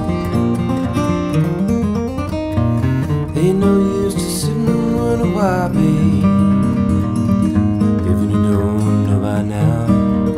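1943 Martin D-28 herringbone dreadnought acoustic guitar being fingerpicked, a steady alternating-bass pattern moving through chord changes. A man's singing voice comes in over it in places, about a third of the way in and again near the end.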